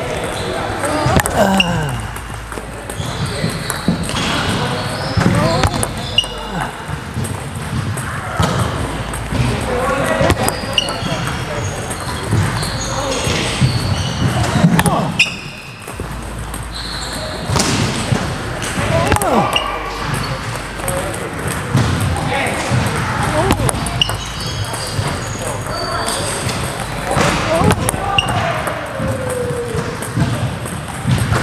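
A table tennis ball ticking repeatedly on the paddle and table during pendulum serve practice, with sharp clicks over and over, against voices talking in a large hall.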